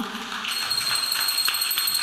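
Rattling percussion like a shaker, at about four strokes a second, with a steady high-pitched tone held over it from about half a second in.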